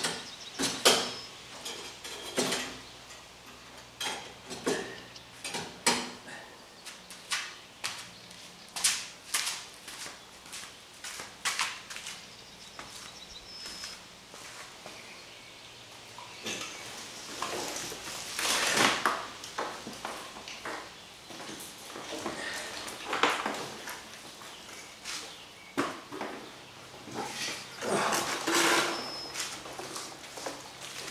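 Scattered metallic clinks and knocks as a long steel bar and other metal parts are handled on a wooden pallet, with a few longer scraping, rustling spells later on.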